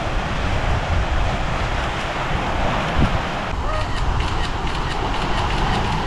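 Wind buffeting the microphone over waves washing onto a rocky shore: a steady rushing noise with a heavy, uneven low rumble.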